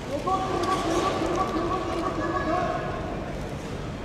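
A sumo gyoji (referee) giving his high, drawn-out chanted call to the grappling wrestlers during the bout, held for nearly three seconds.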